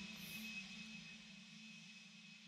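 Faint room tone: a steady low hum with light hiss, nearly silent.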